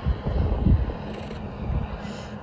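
Wind buffeting an iPhone's built-in microphone: an irregular low rumble, strongest in the first second and easing after.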